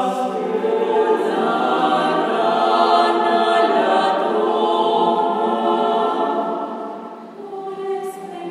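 Mixed choir singing a cappella in sustained chords, swelling through the middle, then fading near the end just before a new chord enters.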